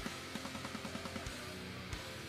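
Faint music with guitar and drums, with a run of quick repeated notes in the first half.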